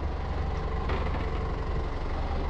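A sailing yacht's inboard diesel engine idling, a steady low hum heard from inside the cabin.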